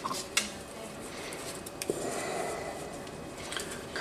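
Light handling noises of small objects on a countertop and cutting board: a few sharp clicks and taps, mostly in the first half second, and a soft hiss about two seconds in.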